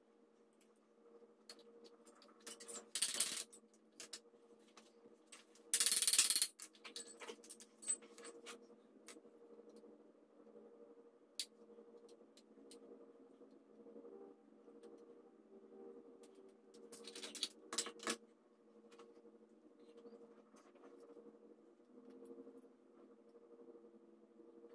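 Steel parts and hardware of a floor jack clinking and rattling as they are handled and pulled free during disassembly: short jingling rattles about three, six and seventeen seconds in, with light taps and scrapes between, over a faint steady hum.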